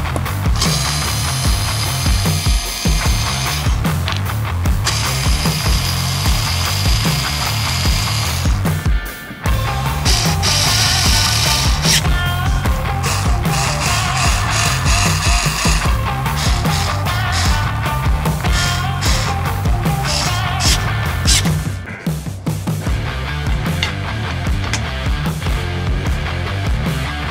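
Heavy rock background music with a steady beat, over a small cordless electric screwdriver that runs several times for two to three seconds at a time, driving screws.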